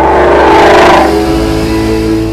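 A car engine revving hard, swelling to a peak about a second in and then fading away, over background music.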